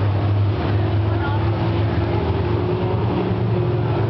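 Pure Stock race car engines running steadily at low speed with the field slowed under caution, a low drone. People talk in the stands over it.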